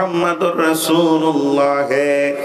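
A man's voice chanting in a melodic sing-song, holding long steady notes that step down in pitch, amplified through a microphone.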